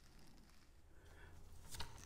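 Near silence: room tone with a faint low hum and a few faint clicks near the end.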